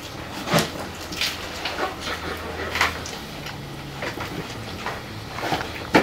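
Tacos being eaten at a table: scattered short crackles of paper wrappers and chewing, over the steady low hum of a fan.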